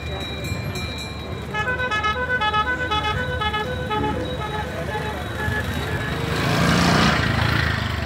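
A musical vehicle horn plays a quick tune of short electronic notes over crowd murmur, trailing off into a few softer notes. Near the end a louder rushing noise swells and fades.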